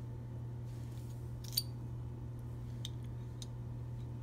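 Handheld stainless-steel cherry pitter squeezed, its plunger punching the pits out of cherries: a few small metallic clicks, the loudest about one and a half seconds in.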